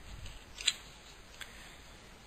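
A pause in a woman's spoken reading: faint steady hiss with two small clicks, about two thirds of a second and a second and a half in.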